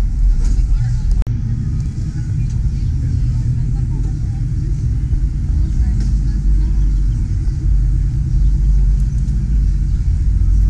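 A loud, uneven low rumble with faint voices of people talking in the background.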